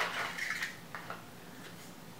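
Cosmetic packaging being handled: a sharp click at the start, a brief light rustle, then another small click about a second in.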